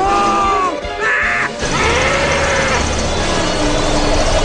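Animated-film soundtrack: music under shouted cries, a long held cry at the start, then a short harsh shriek and a lower drawn-out call.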